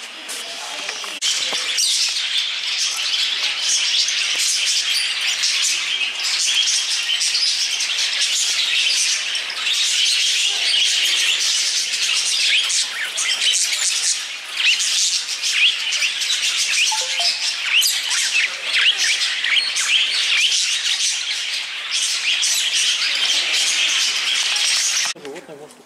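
A flock of budgerigars and other small caged parrots chirping and chattering all at once: a dense, loud, continuous din of many overlapping chirps that starts about a second in.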